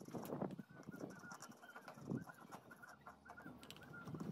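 Domestic fowl calling faintly: a steady run of short, quick clucks, with a louder call just after the start and another about two seconds in.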